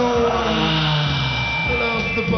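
Live rock band playing an instrumental passage: distorted electric guitar notes sliding and falling in pitch over bass and drums.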